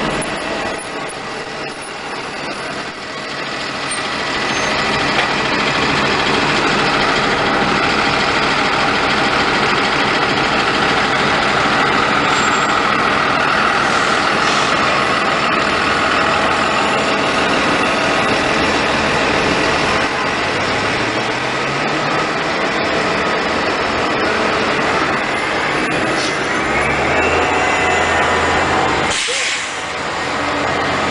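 City transit buses running close by: a steady whine from the drive, with an engine rising in pitch about two-thirds of the way through.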